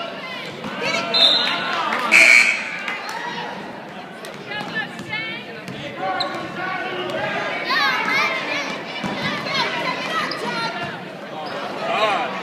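Basketball being dribbled on a hardwood gym floor amid indistinct shouting voices from players and spectators, echoing in the gym. A brief loud high-pitched squeal comes about two seconds in.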